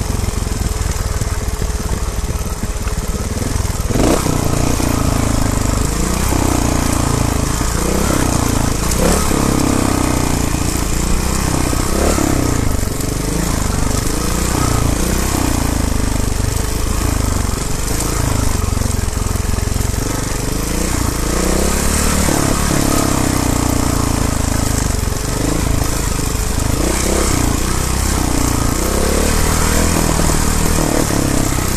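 Trial motorcycle engine running at low revs, its pitch rising and falling in short sweeps every second or two as the throttle is opened and closed. A steady hiss of wind and rattle runs under it.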